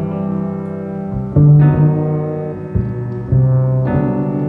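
Acoustic double bass played with a bow in a jazz ballad: long, held low notes, a new one entering about a second and a half in and another near the end, over piano chords.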